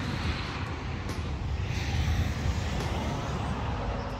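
Road traffic: a steady rumble with a few swells as vehicles pass.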